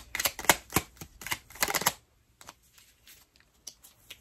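A tarot deck shuffled by hand: a quick run of card clicks and slaps for about two seconds, then only a few faint clicks as cards are handled.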